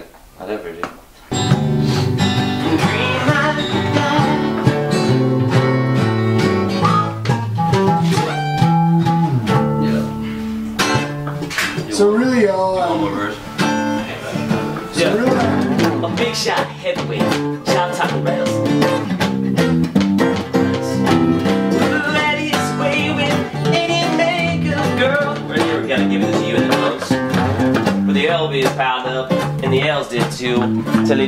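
Acoustic guitar strumming a song with a bass guitar underneath. It starts about a second in and plays on steadily at full volume.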